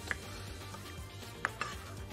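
Two light knocks of kitchen utensils against cookware, one at the start and one about a second and a half in, over faint background music.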